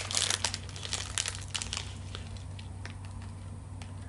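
A protein-ball wrapper crinkling and tearing as it is opened by hand. The crackling is busy for the first couple of seconds, then thins to a few scattered crinkles.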